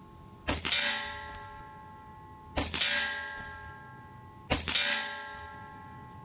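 Three shots from a Diana XR200 .22 PCP air rifle about two seconds apart. Each sharp crack is followed a moment later by the pellet striking metal at the 50-yard target, which rings with a bell-like tone that fades over a second or so.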